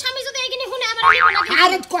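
Bengali conversational speech, with a quickly wobbling, zigzagging pitched sound effect of the cartoon 'boing' kind lasting about half a second, about a second in.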